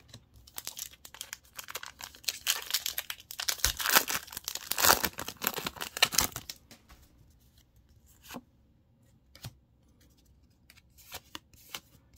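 Foil booster pack wrapper of a Pokémon trading card pack being torn open and crinkled, a dense crackling rip for about six seconds. Then a few light, separate clicks.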